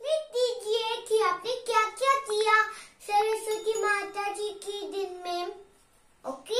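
A young girl singing a short tune in two phrases, stepping between held notes and ending on a long held note.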